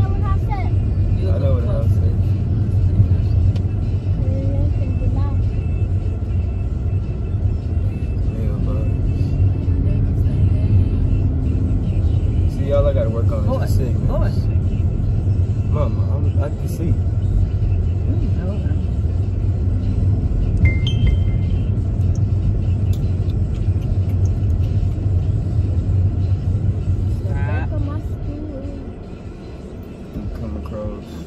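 Steady low rumble of a moving car's road and engine noise heard inside the cabin, dropping away near the end.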